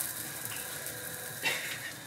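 A just-flipped pancake sizzling faintly in a frying pan over a gas flame, with a short brief noise about one and a half seconds in.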